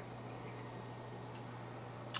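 Faint steady low hum with a soft trickle of water, the background of a running aquarium.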